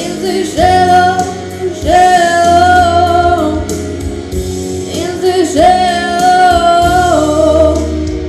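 A young woman singing into a microphone over backing music with guitar and bass: three phrases, each ending on a long, high held note, the last two lasting about a second and a half each.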